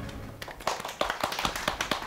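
A small group of people clapping their hands in welcome, the uneven claps starting about half a second in.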